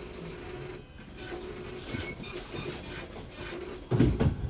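Post office counter printer printing in several short runs, over a steady low hum in the room.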